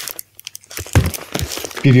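Crinkling of a clear plastic record sleeve as a vinyl LP is handled and drawn out, with a few light knocks.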